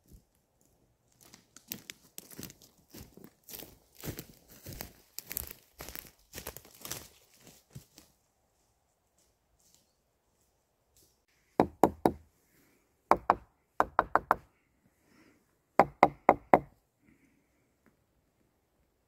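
Footsteps crunching through dry leaf litter and twigs on a woodland floor, then four clusters of loud, sharp knocks in quick succession near the end.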